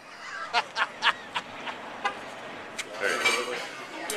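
Metal knife and fork clicking and clinking several times as they are handled at a table, over background voices, with a short spoken 'yeah' near the end.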